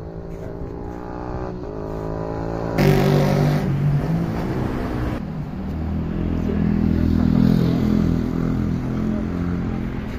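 A motor vehicle's engine running and accelerating, its pitch rising over the first three seconds, then louder and steadier for the rest.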